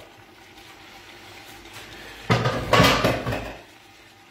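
A pot of sausage and white wine simmering faintly, then about two seconds in a loud clatter of kitchen utensils and pans being handled while the counter is cleaned, lasting about a second.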